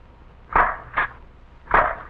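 Riveting machine fastening the music-making chime parts into a tin jack-in-the-box can: four short, sharp strokes in two pairs, the pairs a little over a second apart.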